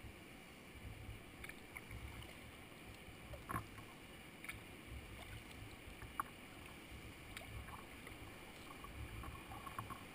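Faint water sounds around a kayak moving on a creek: a soft low lapping against the hull that swells every second or two, with a few small clicks and drips scattered through, more of them near the end.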